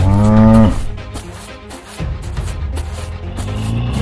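Cattle moo sound effect: a loud moo lasting under a second, then a longer, deeper bovine call from about two seconds in that rises slightly at the end, over background music with a steady beat.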